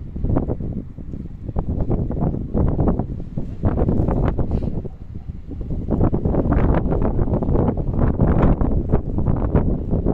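Wind buffeting the microphone: a loud, gusty rumble that swells and drops irregularly, strongest in the second half.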